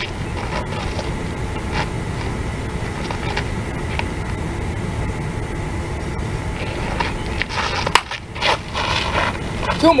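Steady wind rumble buffeting the microphone of a camera lying on the ground. Near the end comes one sharp crack of a bat hitting a pitched ball.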